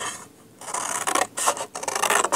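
Scissors cutting through heavy watercolour paper: a run of rough, rasping snips and rubs that starts about half a second in.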